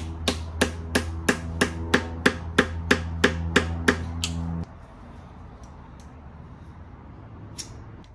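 Hammer blows on a 10 mm socket used as a punch, packing bread into an engine's pilot bearing bore so the pressure will force the old pilot bearing out. About fourteen evenly spaced metal strikes at roughly three a second, stopping after about four seconds, then one lighter tap near the end.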